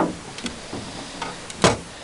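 A few small clicks and one sharp knock a little after the middle, from handling fishing tackle and a caught fish in a small boat, over a steady low hiss.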